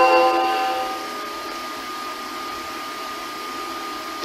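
Train station departure melody on a chime-like electronic keyboard, its last notes ringing out and fading over the first second. After that comes steady platform background noise with a faint, steady high hum.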